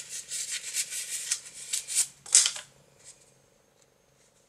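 Rustling and rattling of things being rummaged through and handled while a ball of yarn is fetched. It lasts about two and a half seconds, with a louder rustle just after two seconds, and then gives way to a few faint ticks.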